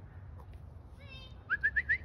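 A person's high chirping noises to get a dog's attention: a short high call about a second in, then four quick rising chirps near the end.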